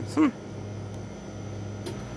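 Steady low hum of a store's refrigerated display coolers, with a faint click near the end.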